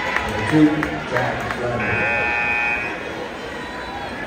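Basketball scoreboard buzzer sounding once for about a second, a steady electronic tone, over the chatter of a gym crowd.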